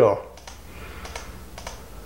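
A few faint, unevenly spaced clicks from a computer's mouse and keyboard over low room noise.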